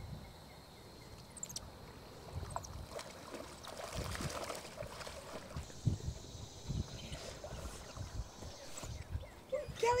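Faint outdoor water ambience: light splashing from swimmers in a lake, under an uneven low rumble of wind on the microphone.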